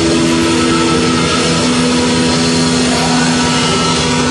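Heavy metal band playing live, with distorted electric guitars and bass holding long sustained chords over the drums; the held notes shift about one and a half seconds in.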